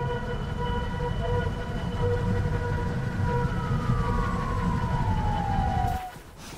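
A steady, droning held tone over a low rumble; about halfway through, one pitch begins sliding slowly downward, and the sound cuts off abruptly at the end.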